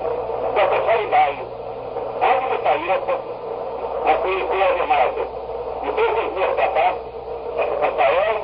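A man speaking Portuguese in a sermon, heard through a muffled, low-fidelity 1964 tape recording, with a steady low hum underneath.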